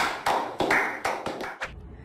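A small group of people clapping, a quick run of sharp claps that stops about a second and a half in.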